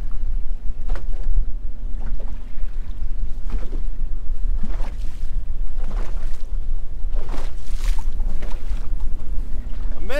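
Strong wind rumbling on the microphone on an open boat in choppy water, with waves slapping against the hull every second or so.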